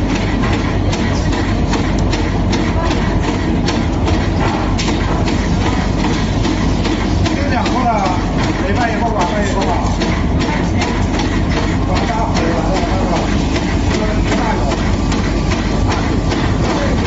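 Steady, loud running of silicone rubber processing machinery (a two-roll mill and a sheeting roller line), with frequent irregular clicking and rattling.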